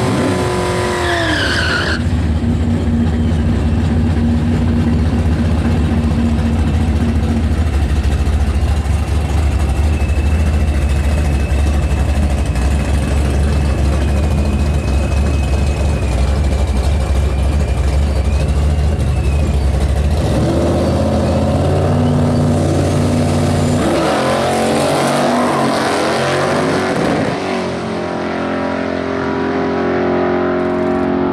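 Drag race cars at the starting line: a red Ford Mustang's engine revving through the end of a rear-tyre burnout, then two cars' V8 engines rumbling at a steady, deep idle while they stage. Near the end both engines rev up hard and accelerate away down the strip.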